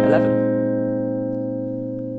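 Clean electric guitar chord, a B-flat 11 resolving from an F9 secondary dominant, left ringing and slowly fading away.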